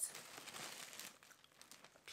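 Packaging rustling and crinkling as clothes are taken out to be unpacked. It is loudest at the start and fades away.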